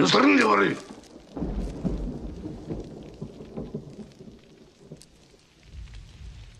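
Film soundtrack: a loud, wavering pitched sound in the first second, then deep rumbling like distant thunder with a quieter pitched layer over it, and a second rumble near the end.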